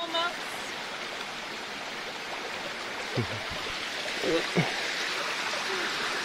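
Steady rushing of a shallow stream flowing over rocks, with faint voices at moments.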